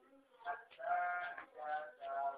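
A voice singing in short phrases with a wavering pitch.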